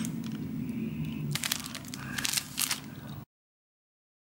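Cellophane gift wrap crinkling and crackling as it is handled, with several sharp crackles in the second half. The sound cuts off abruptly about three seconds in.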